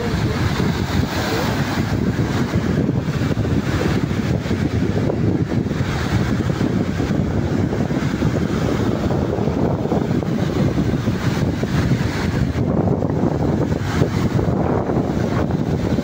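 Wind buffeting the phone's microphone in a steady low rumble, over the continuous wash of small sea waves breaking and running up a sandy beach.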